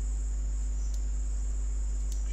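Steady low electrical hum with a constant high-pitched whine over it: the noise floor of the recording setup between sentences.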